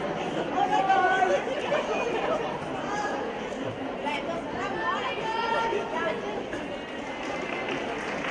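Spectator crowd chattering, many voices talking at once in a large sports hall.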